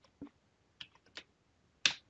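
Computer keyboard keys pressed a few times: about four sparse, separate clicks, the last and loudest near the end.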